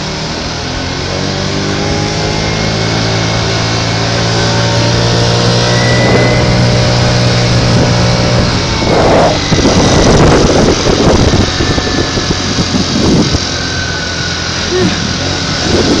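Moped engine running while riding, its note rising gradually as it speeds up. From about nine seconds in, wind buffets the microphone in irregular gusts.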